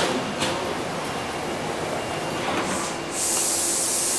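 Taipei Metro C301 train standing at the platform: a sharp click at the start and another just after, then about three seconds in a loud, steady hiss of air starts up and keeps going.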